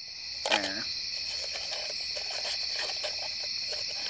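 A steady, high-pitched chorus of crickets and other night insects. A short vocal sound comes about half a second in, with faint clicks and rustles of small objects being handled.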